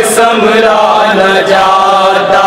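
Men's voices chanting an Urdu noha, a Muharram lament, over microphones, holding long, slowly wavering sung notes.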